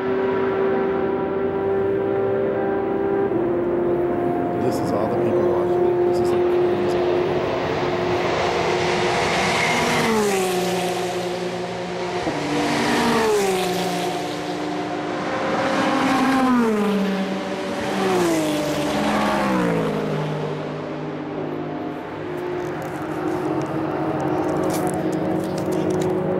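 Endurance race cars running flat out on a long straight, engines held at high revs. About five cars pass in the second half, each engine note dropping sharply in pitch as it goes by.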